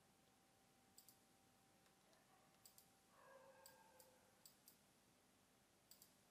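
Very faint computer mouse clicks, several in quick pairs a moment apart, over a low background hiss.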